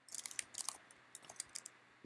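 Faint computer keyboard clicks: a quick run of keystrokes in the first second, then a few scattered clicks.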